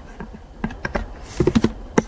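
Computer keyboard typing: a few separate key taps, then a quick run of taps about one and a half seconds in.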